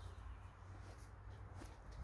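Faint outdoor background with a steady low rumble and no distinct sound event.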